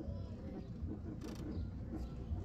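Low, steady rumble of a car cabin as the car moves slowly, with faint voices in the background and a brief hiss about a second and a half in.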